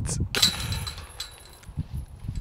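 A golf disc hits the chains of a metal disc golf basket: a sudden metallic rattle and jingle about a third of a second in, ringing on briefly and fading.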